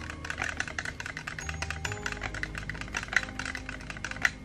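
A thin stirrer clicking and tapping rapidly against the sides of a small plastic pot as green liquid wax colour is stirred, over soft background music.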